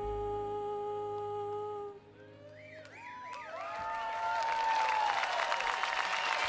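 A live acoustic band's final held chord rings out and stops about two seconds in. The audience then whistles and cheers, and applause builds toward the end.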